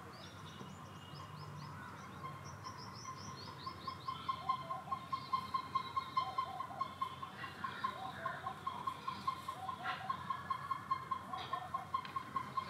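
Birds calling: a quick run of high, falling chirps in the first few seconds, then a rapid, even string of same-pitched pips, about four or five a second, that becomes the loudest sound, with short lower calls mixed in.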